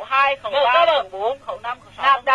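A man's voice narrating, with a thin, old-recording sound cut off above the middle of the range.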